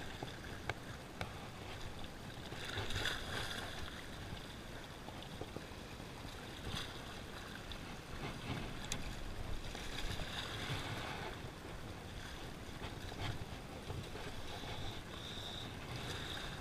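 Sea water lapping and washing against breakwall rocks, with wind on the microphone; the wash swells a little a few times, around three seconds in and again near ten to eleven seconds.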